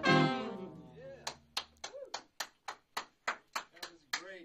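A swing band's final chord of brass, saxophones and bass ringing out and fading over the first second or so, then sparse hand clapping from a few people, about three claps a second.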